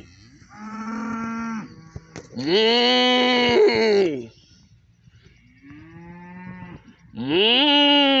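Beef cattle mooing: four long moos, each rising and then falling in pitch. Fainter moos come about half a second in and near six seconds, and each is followed by a louder one; the last loud moo runs on past the end.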